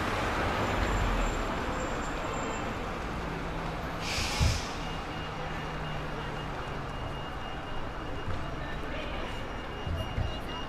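Single-deck diesel bus, an Alexander Dennis Enviro200, running low as it pulls in and stops. About four seconds in comes a short, sharp hiss of its air brakes, the loudest sound. A thin steady high tone follows.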